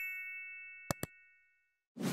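Animated subscribe-button sound effects: bright chime tones ringing and fading away, with two quick clicks about a second in.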